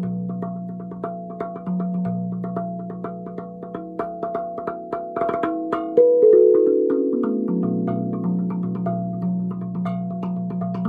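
Podmanik steel tongue drum tuned to B celtic minor, struck with felt-headed mallets: low notes ring on under quick, light taps, then a hard stroke about six seconds in sets off a run of ringing notes stepping downward.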